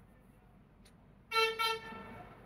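A vehicle horn beeps twice in quick succession, a little over a second in: two short steady tones with a fading tail.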